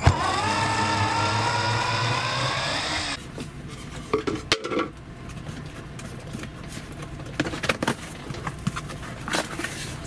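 Cordless drill running a screw out of a wooden crate, its motor whine rising slightly in pitch for about three seconds before stopping suddenly. After that come scattered knocks and clatter of the loosened wooden lid boards being handled.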